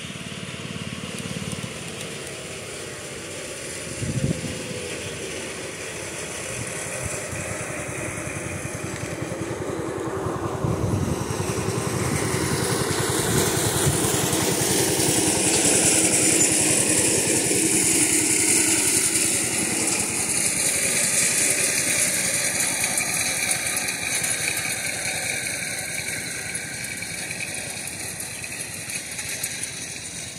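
Engine noise that swells slowly over about fifteen seconds and then fades, its pitch falling as it passes. A brief knock sounds about four seconds in.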